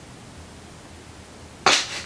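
Quiet room tone, then about 1.7 s in a sudden short burst of breath as a man breaks into a laugh.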